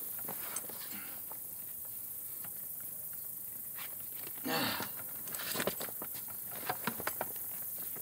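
Hands working a saddle's leather latigo strap and its hardware: a brief rustle about halfway through, then a few light clicks and taps, over a steady background hiss.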